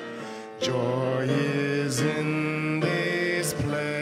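Live devotional song sung by a male vocalist in long held notes; a new sung line begins about half a second in.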